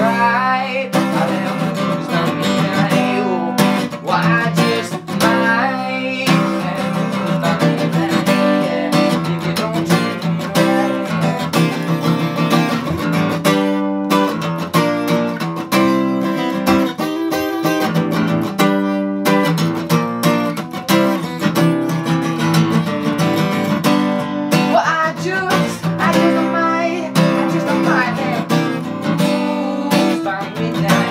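Acoustic guitar played live, strummed and picked in a steady rhythm.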